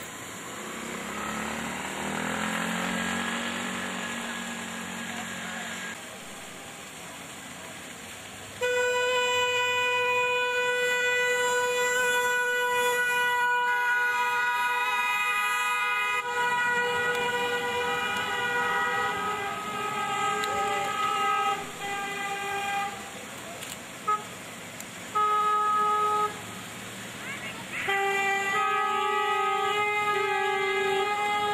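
Car horns of a wedding convoy honking: several horns sound together in one long blast of about seven seconds, followed by a few shorter toots and another held honk near the end.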